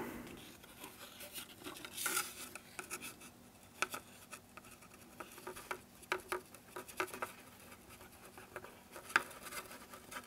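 Faint scattered ticks and scratches of a plastic glue bottle being squeezed and its nozzle worked along the wooden braces of an acoustic guitar top, laying down a small bead of glue; a slightly longer scrape comes about two seconds in.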